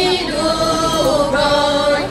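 Women's folk choir singing unaccompanied, several voices together holding long, drawn-out notes.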